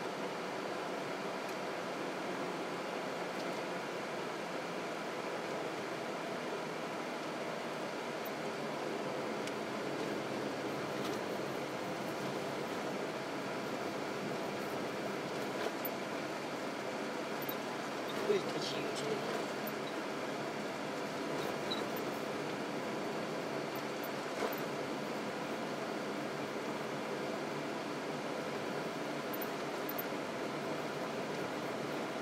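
Steady road and engine noise inside the cabin of a moving car, with a brief sharp sound a little past halfway.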